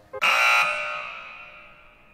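Buzzer sound effect, a wrong-answer signal: a loud, harsh buzzing tone that starts abruptly and fades away over about a second and a half.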